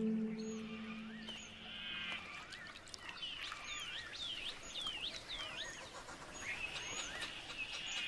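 Birds calling in a natural soundscape: a run of short, high, down-slurred chirps repeating about once a second through the middle, with lower rising notes and brief trills around them.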